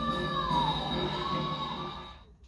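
Recorded song playing from a TV: a female singer belts a sustained high note, labelled D5 on screen, over musical accompaniment; the note dips slightly in pitch and comes back up before the playback fades out near the end.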